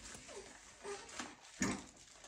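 Newborn baby making faint whimpering, fussing sounds during his bath, a few short cries, one falling in pitch, with a brief louder burst a little past the middle.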